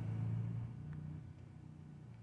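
Faint low background hum that fades over the two seconds, with a faint tick about a second in.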